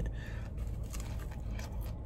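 Soft scraping and squishing as a saucy birria quesadilla and its plate are handled and bitten into, with faint scattered clicks, over a low steady hum.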